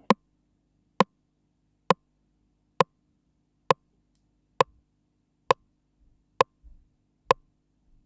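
Analog TR-909-style rimshot circuit on a breadboard, triggered in a steady pulse: nine short, sharp rimshot hits about one a second. One bandpass filter's tuning pot is being turned, changing the pitch of the hits a bit.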